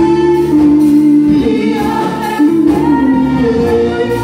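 A woman singing a gospel worship song through a microphone and PA, holding long notes, backed by a live band of keyboard, electric guitar and drums.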